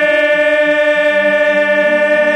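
A male bhajan singer holds one long, steady note at the end of a sung line. A lower accompanying tone joins underneath about a second in.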